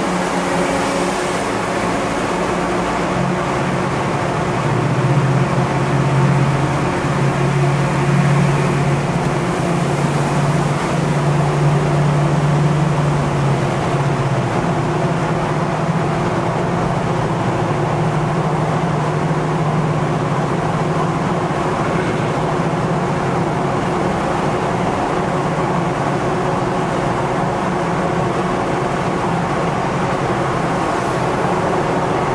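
Steady engine and road drone of a car driving through a road tunnel, heard from inside the cabin. A deeper engine hum swells a few seconds in and eases off about halfway through.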